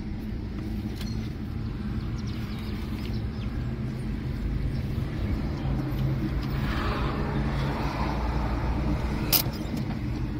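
Car engine idling, heard from inside the cabin: a steady low hum with one sharp click near the end.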